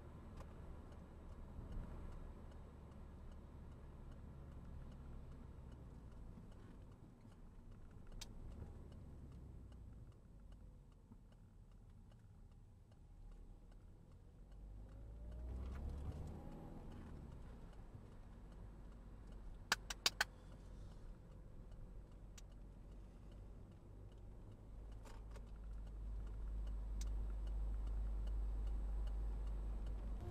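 Low road and engine rumble heard from inside a moving car, with an engine note rising briefly about halfway through. Three quick sharp clicks come shortly after, and the low rumble grows louder near the end.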